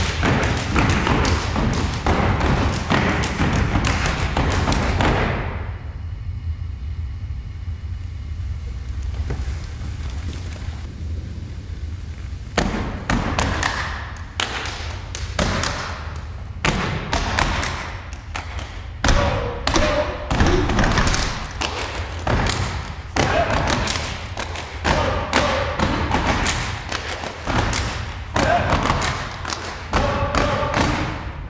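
Step routine: feet stamping on a wooden stage floor with hand claps and slaps on the body in a rhythm, and voices calling out at times. The strikes thin out and grow quieter for several seconds about a fifth of the way in, then come back dense.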